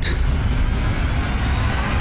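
A loud, steady rush of noise with a deep rumble underneath and no voices, from a movie trailer's soundtrack.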